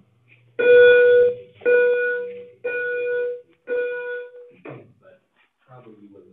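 Four loud electronic beeps at one steady pitch, each just under a second long and about a second apart.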